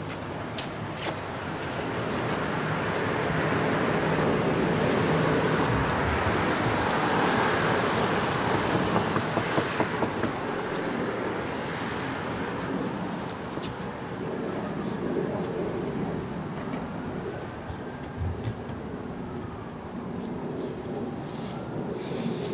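A road vehicle passing, its noise swelling and fading over about ten seconds, with a few scattered clicks.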